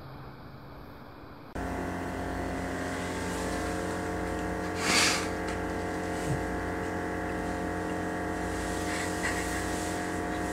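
A steady droning hum with many overtones sets in suddenly about a second and a half in and holds level. A short, loud hissing burst comes about five seconds in.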